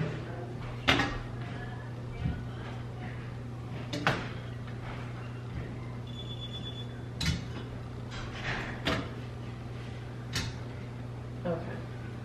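Cast-iron gas-range burner grates being lifted off the stove top and stacked on the counter: a series of sharp clanks and knocks, about seven spread out, over a steady low hum.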